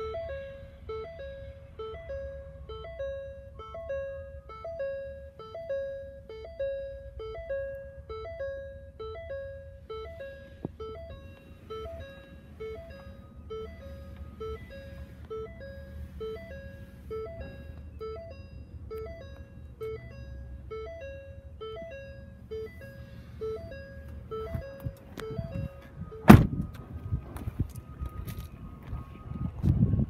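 Ford Transit cab warning chime sounding over and over, the same two alternating notes repeating evenly, then stopping a little over twenty seconds in. A couple of seconds later there is one loud thunk of a van door being shut, and a softer thud near the end.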